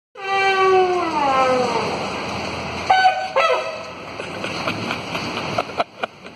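A hand-held horn blown by mouth: one long note that slides slowly down in pitch, then two short, higher blasts about three seconds in. A few faint clicks follow, and a sharp knock just before the end.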